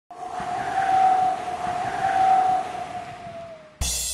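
A steady rushing hiss carrying a held whistle-like tone that swells twice and sinks a little in pitch as it fades, cut off near the end by music with a drum beat.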